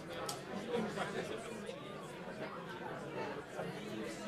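Many people chatting at once in a large room, an overlapping babble of conversation with no single voice standing out, and one small click shortly after the start.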